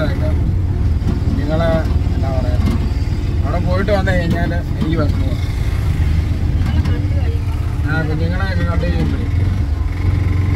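Auto-rickshaw engine running steadily with a continuous low rumble while the vehicle drives, heard from inside the open passenger cabin, with voices talking over it.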